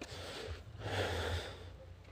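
A single breathy snort, a short noisy rush of air about a second in, over a low steady rumble.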